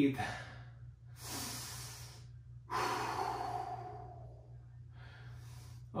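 A man breathing hard to catch his breath after strenuous exercise: two long breaths, the first about a second in and the second, falling in pitch, at about three seconds, then a fainter one near the end.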